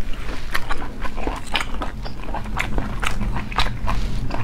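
Close-miked wet chewing of cooked snail meat in sauce, with quick sticky clicks and smacks several times a second, over a low steady hum.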